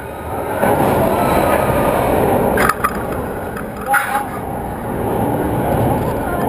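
Roller coaster car rolling slowly along its steel track, a steady rumble that picks up about half a second in, with two sharp clanks a little over a second apart near the middle.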